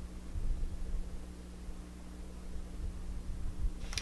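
Room tone: a low, steady electrical-sounding hum with faint hiss and no other distinct sound.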